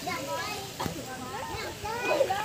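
Several children's voices overlapping as they chatter and call out while playing, with a single short knock a little under a second in.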